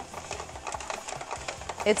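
Hand-cranked plastic spiralizer cutting a raw zucchini into noodles: a quick, continuous run of small clicks and scraping as the crank turns the zucchini against the blade.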